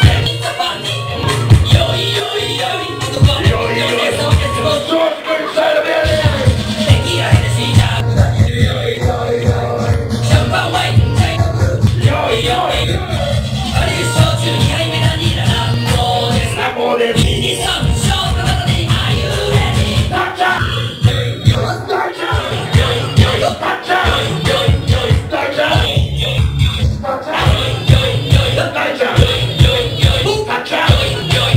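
Loud club music with a heavy, pulsing bass beat, played over a nightclub sound system on a crowded dance floor. The bass drops out briefly about five seconds in, then the beat returns.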